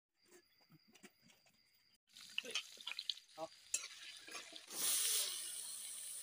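Food frying in hot oil in an iron wok, with a metal spoon clicking and scraping against the pan. The sizzle surges loudly about five seconds in, then carries on steadily.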